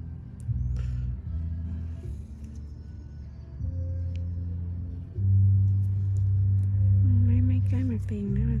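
Background music of sustained low notes that change every second or so, growing louder about five seconds in, with a brief wavering voice near the end.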